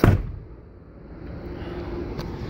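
A motorhome's cab door slammed shut once, a single sharp bang right at the start that dies away quickly, followed by a faint steady hum.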